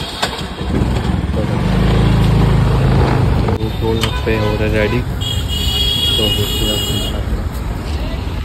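Street traffic noise, loudest as a low rumble about two seconds in, with people talking. A steady high-pitched tone sounds for about two seconds past the middle.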